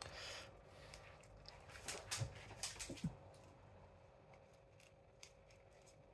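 Faint crinkling and clicking of a small plastic sachet of paste being squeezed out over a pan, with a few louder crackles about two to three seconds in, over a faint steady hum.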